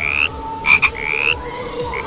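Frog calling: a few short rising croaks, with two sharp, louder notes in quick succession just before a second in.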